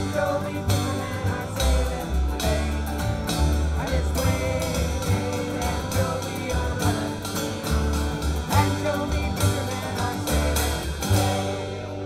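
Small acoustic band playing an upbeat country-style song: two strummed acoustic guitars, upright bass, drum kit and several voices singing together. The song winds down to its end near the close.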